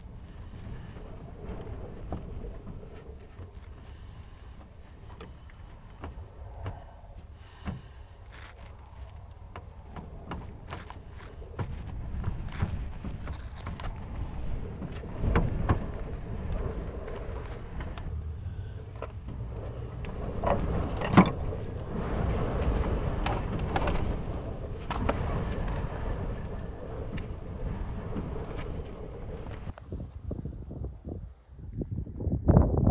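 Gusty wind rumbling on the microphone, with scattered knocks and rustles of sketchbook paper being handled and blown about. It grows louder about twelve seconds in, with one sharp knock a little after twenty seconds.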